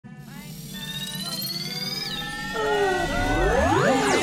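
Electronic intro music swelling up: held synth tones sliding up and down over a low drone, growing steadily louder, with a cluster of steep rising sweeps building in the last second.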